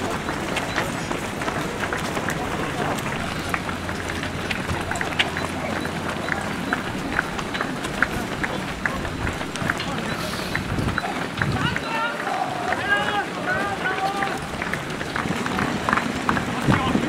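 Footfalls of a large pack of marathon runners in running shoes on asphalt: a dense, continuous patter of many feet. A voice talks for a few seconds near the end.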